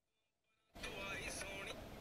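Dead silence for under a second at an edit, then faint room ambience with faint, indistinct voices.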